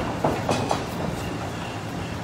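Boxers sparring in a ring: a few quick thuds in the first second from their footwork and punches, over a steady rumbling noise from the ring floor and gym.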